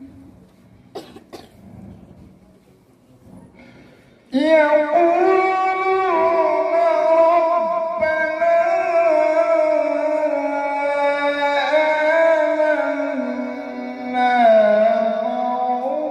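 A man's voice reciting the Quran in slow, melodic tartil through a microphone. It comes in about four seconds in with long held notes that glide slowly up and down. Before that there is a quieter pause with two brief sharp sounds about a second in.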